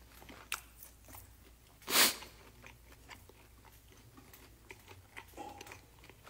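Close-up chewing of crispy glazed fried chicken (dakgangjeong), with small crunches and mouth clicks throughout and one much louder noisy burst about two seconds in.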